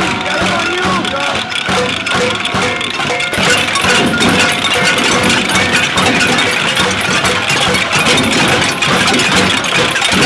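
A crowd beating pots and pans: a dense, continuous clatter of metal clangs that grows louder and thicker from about three seconds in.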